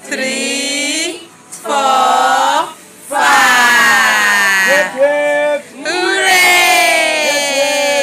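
A group of children shouting a count in unison, each number drawn out into a long call, several calls in a row with short breaks between.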